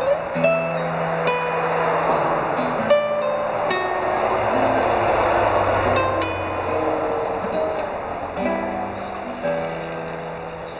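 Nylon-string classical guitar played solo, single plucked notes and chords, over a rushing background noise of passing traffic that swells in the middle and fades.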